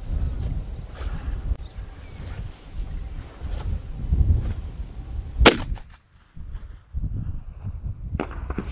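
A single sharp, loud shot from a .45-70 Government rifle fitted with a muzzle brake, fired about five and a half seconds in.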